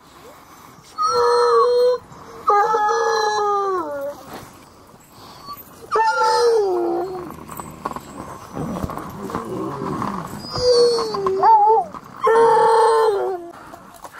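Harnessed sled dogs howling: about five loud drawn-out calls, each sliding down in pitch, with a quieter stretch about halfway through, the excited vocalizing of a hooked-up team waiting to run.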